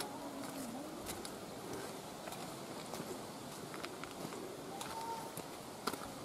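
Faint outdoor ambience: a low steady hiss with scattered soft clicks.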